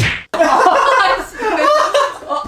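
A single sharp slap at the very start, then a brief dropout, followed by laughing voices.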